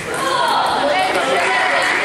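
Table tennis ball struck with a bat and bouncing on the table as a rally ends, followed by voices calling out in the hall over steady background noise.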